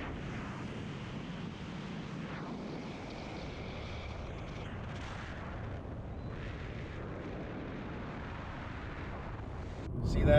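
Steady wind rush and road noise from a moving car, picked up by a camera mounted on the outside of the car, with wind rumbling on the microphone.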